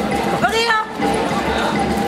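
Voices of a crowd of protesters in the street, with one loud voice calling out in a rising-and-falling shout about half a second in.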